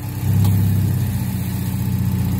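Mazda MX-5 Miata's four-cylinder engine idling steadily; about a quarter second in it steps up louder and holds there, the air conditioning having just been switched on. A faint click follows shortly after.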